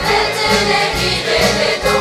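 Young female choir singing together over a live band, with a steady low beat about twice a second underneath.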